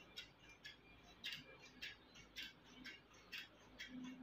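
Scissors snipping through doubled cloth, a faint run of short crisp snips about twice a second as the blades cut along a line.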